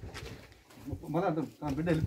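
A person's voice, speaking or wailing in a rising and falling sing-song, starting about a second in; the words are not caught.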